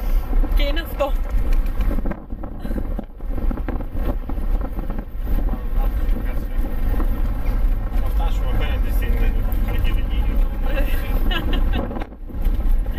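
Car cabin noise while driving: a steady low rumble of engine and road noise, with voices heard at times, mostly near the start and in the last few seconds.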